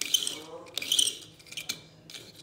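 Plastic wheels of a Hot Wheels diecast car being pushed across 1000-grit sandpaper: two short scratchy sanding passes about a second apart, with a lighter touch near the end.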